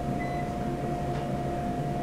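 Steady background hum with a constant mid-pitched whine running under it, unchanging throughout.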